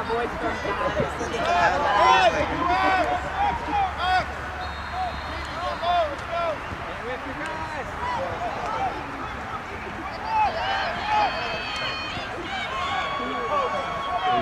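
Overlapping distant shouts and calls from youth lacrosse players and spectators across an outdoor field, with no one voice standing out.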